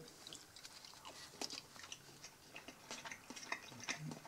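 Faint chewing of a mouthful of sausage salad (strips of bologna sausage and cheese in a sour dressing), heard as soft, irregular small clicks.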